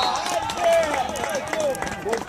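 Several men's voices shouting and calling out over one another across an open football pitch, with a few short knocks among them.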